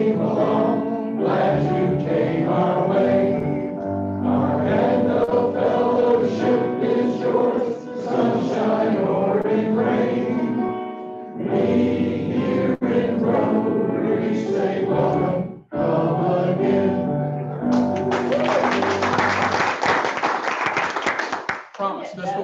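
A roomful of people singing a welcome song together. About eighteen seconds in, the singing gives way to a few seconds of applause.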